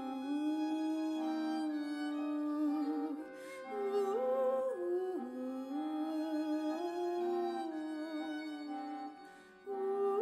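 Jazz ensemble with a string section playing a slow melody in long held notes, with a brief dip in level about three seconds in and another near the end.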